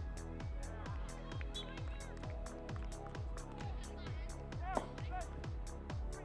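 Background music with a steady dance beat: kick drum about four times a second and regular hi-hat ticks.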